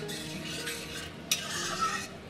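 A metal spoon stirring and scraping thick masala gravy around a kadai, with a sharper scrape about two-thirds of the way through and another near the end.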